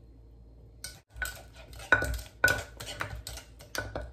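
A wooden pestle knocking and working in a clay mortar of shrimp-paste chili dip, with a metal spoon clinking against the mortar, as freshly squeezed lime juice is mixed in. After about a second of quiet comes a run of sharp, ringing knocks, the loudest about two seconds in.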